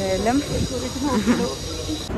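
A woman's voice talking close to the microphone over a steady background hiss with a faint high whine, which cuts off suddenly at the end.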